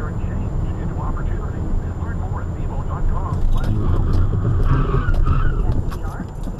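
Road and engine noise inside a car at highway speed, picked up by the dashcam: a steady low rumble. Faint indistinct voices sit under it, and a few sharp clicks come in the second half.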